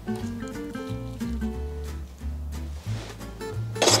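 Instrumental background music: a melody of short held notes over a low bass line.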